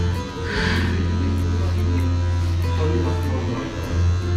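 Background guitar music over a steady low buzz from electric hair clippers, which drops out briefly near the end.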